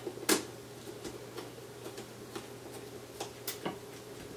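Scattered light metallic clicks and ticks of a Phillips screwdriver turning a screw into the iMac's metal RAM access cover, with one sharper click about a quarter second in and a few more near the end.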